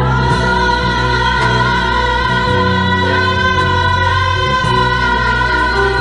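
Gospel choir singing long held chords, the voices wavering with vibrato, over sustained low bass notes.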